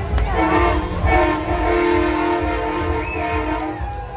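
Multi-tone air horn sounding a chord, starting about half a second in, breaking briefly, then holding for nearly three seconds before it stops near the end, over a steady low rumble.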